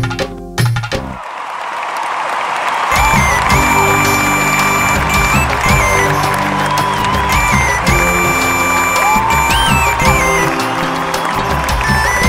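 Live band playing an instrumental passage of a fast praise-and-worship song, with no singing. About a second in, the bass and drums drop out for about two seconds under a swelling hiss; then the full band comes back in, carrying a high lead melody with slides in pitch.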